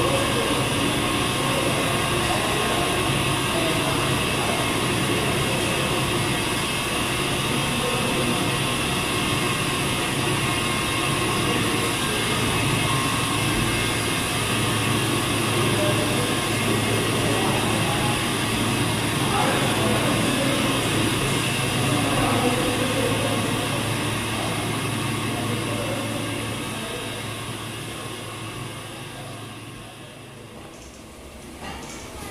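Old dairy machinery running steadily, a constant mechanical whir and hum with steady high-pitched tones, with voices in the background; it fades away over the last few seconds.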